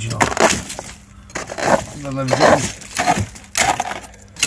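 A crowbar scraping and prying at crumbling wet render and insulation on an exterior wall, with short crunching, breaking noises, amid a man's short remarks.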